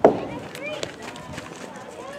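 A baseball strikes the chain-link backstop fence with one sharp bang right at the start, which dies away quickly: a pitch that got past the catcher. Distant shouts from players and coaches follow.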